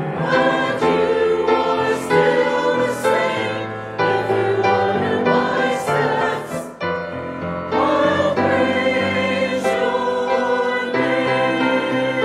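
Mixed choir of men's and women's voices singing together, sustained notes moving from chord to chord.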